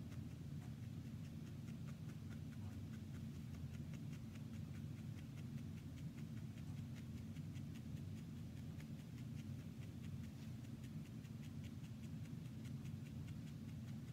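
Barbed felting needle making repeated shallow stabs into wool roving, a quick, regular series of faint soft ticks several times a second. A steady low hum runs underneath.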